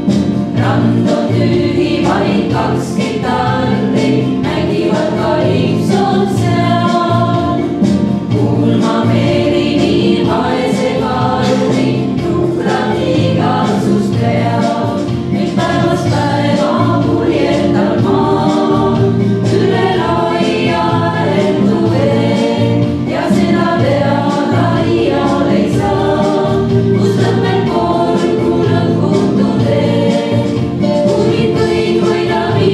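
Women's vocal ensemble of six singing in harmony into microphones, with held notes that change from chord to chord.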